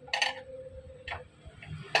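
Small clicks and a brief rustle from wire connectors being handled and pressed onto a fan's speed-switch terminals, the sharpest click near the end, over a faint steady hum.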